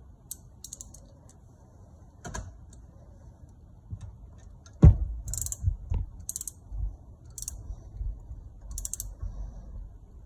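Ratchet wrench clicking in several short bursts as a bolt on the starter-generator is turned to tension a new drive belt, with a single sharp knock about five seconds in, the loudest sound.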